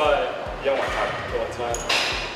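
Men talking over background music with a steady thumping beat, about four to five thumps a second.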